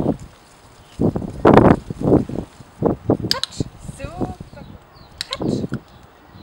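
A person's voice speaking short, separate words, the loudest about one and a half seconds in, with a few sharp clicks a little after three seconds and again after five seconds.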